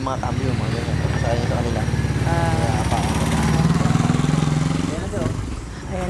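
A motor vehicle's engine passing close by, its low, rapidly pulsing running sound growing louder to a peak past the middle and then fading away.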